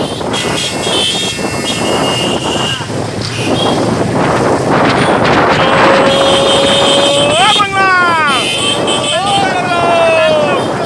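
Many motorcycles running together in a slow procession, with wind on the microphone. In the second half a man shouts long, drawn-out calls: one held note that rises and then falls away, then another shorter one near the end.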